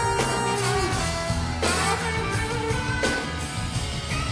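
Live band playing loud with guitar and drums, an instrumental passage with no singing.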